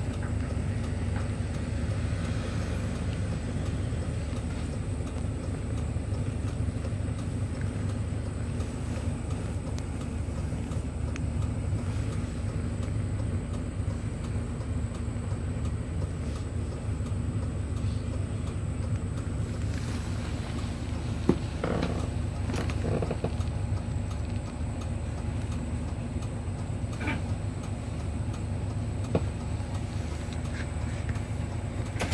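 City bus driving, heard from inside the cabin: a steady low engine and road rumble, with a few short knocks in the last third.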